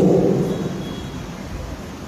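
A pause in a man's amplified speech: his last word echoes and fades away in a large hall, leaving a steady low room noise.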